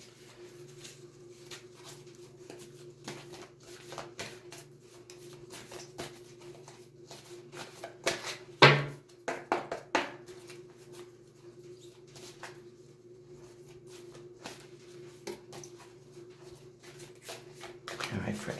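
A deck of oracle cards being shuffled by hand: a run of soft card clicks and rustles, with one louder sound about halfway through, over a steady low hum.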